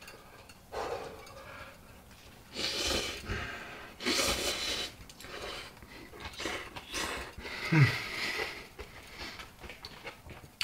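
A person slurping instant ramen noodles off chopsticks: several separate long, hissy slurps in turn, with a brief low hum falling in pitch near the end.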